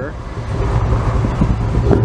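Ram pickup truck driving past at street speed: a steady engine and tyre rumble.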